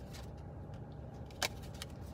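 Steady low hum inside a car cabin, with a few light ticks and one sharper click about one and a half seconds in, from a tarot deck being handled as one more card is drawn.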